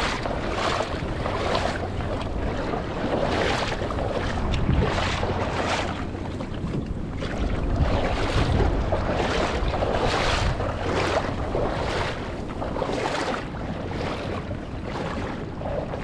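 Legs wading through shallow water, each stride splashing and swishing in a steady rhythm of one to two a second, with wind rumbling on the microphone.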